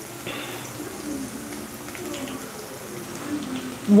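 Faint, steady sizzle of oil frying in a kadai, with faint low wavering tones beneath it.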